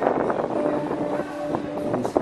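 Acoustic guitar playing, with a note held for about a second, and wind noise on the microphone.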